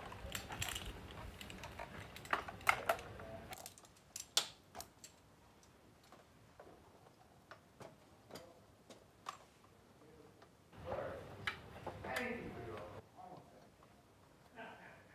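Scattered clicks and knocks of a man handling a chainsaw and its gear and climbing an aluminium extension ladder, with a cluster of louder knocks and rustling near the end as his boots go up the rungs. A low rumble runs under the first few seconds.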